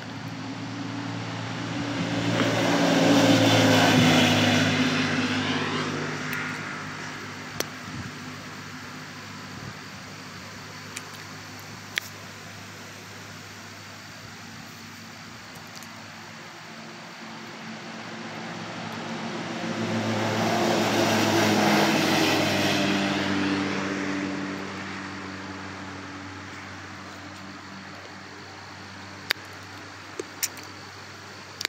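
Two side-by-side UTVs drive past one after another. Each engine swells as it approaches and fades as it goes by, its pitch dropping slightly as it passes: the first about four seconds in, the second around twenty-two seconds in.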